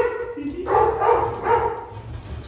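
Dog whining and yelping in a run of high, drawn-out calls as it reaches for raw meat held out to it.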